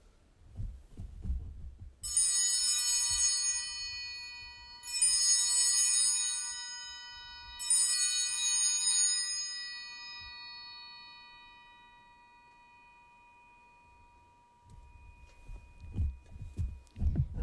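A church altar bell struck three times, about two and a half seconds apart, each stroke ringing on and fading slowly. It marks the blessing with the Blessed Sacrament in the monstrance.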